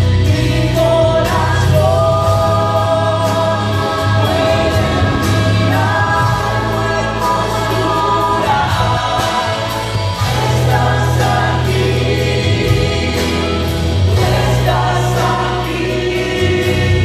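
Live Spanish-language worship song: voices singing long held lines over band accompaniment with a steady bass and beat.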